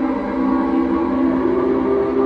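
Electronic drone music from a small Korg Volca Modular and NTS-1 synth set-up: several sustained tones layered together, with one of them gliding slowly upward in pitch about halfway through.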